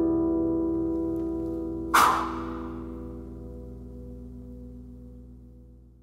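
Acoustic guitar's last chord ringing out and slowly fading away. About two seconds in, one sharp strike on the strings rings out over it and dies away.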